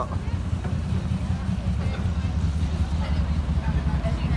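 Busy city street ambience: a steady low rumble of passing traffic, with faint voices of passers-by.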